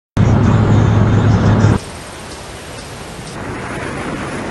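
A loud low rumble that cuts off sharply after about a second and a half, followed by a quieter steady rushing noise of a vehicle travelling along a road, swelling slightly near the end.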